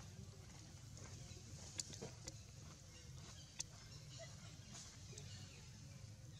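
Faint, steady outdoor background hum, broken by a few sharp clicks: two close together about two seconds in and one more about three and a half seconds in.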